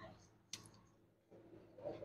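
Near silence with a single faint, sharp click about half a second in.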